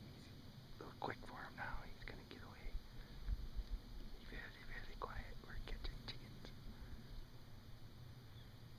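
Quiet whispering voices in short, broken phrases, with a few faint clicks about two-thirds of the way in.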